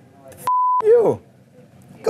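A censor bleep: one steady, mid-pitched beep tone lasting about a third of a second, laid over the speech track, which is blanked out beneath it, followed at once by a man's voice sliding down in pitch.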